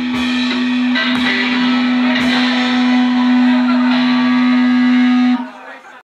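Rock band's final held chord: electric guitar and bass ringing one long note while the drum kit crashes several times, then the band stops together about five and a half seconds in.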